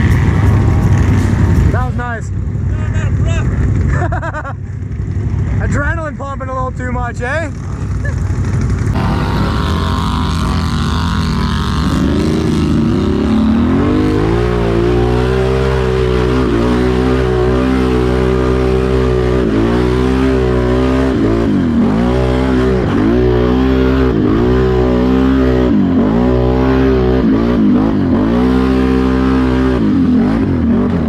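Can-Am Renegade XMR ATV engine riding hard through a mud field. It starts as a rough, noisy rush with the pitch swinging up and down. From about a third of the way in a strong, steady engine note takes over, dipping and coming back up every second or two as the throttle is worked.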